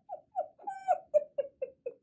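A woman giggling: a run of short, breathy laughs, about three or four a second.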